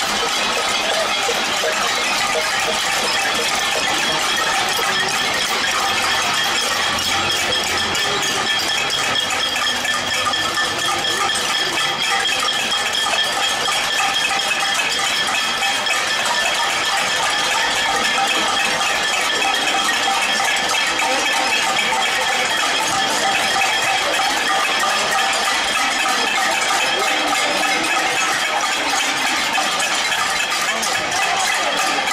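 A protesting crowd banging pots and pans (a cacerolada): a dense, steady metallic clanging and rattling with a ringing edge, without a break.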